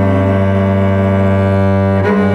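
A cello bowed, holding a long, low note steadily with rich overtones. An upper note above it drops away about half a second in.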